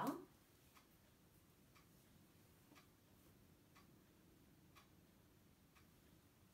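Near silence: quiet room tone with faint, regular ticks about once a second.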